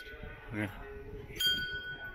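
A small hanging temple bell is struck once about one and a half seconds in. It rings with a clear, high ring that dies away over about a second.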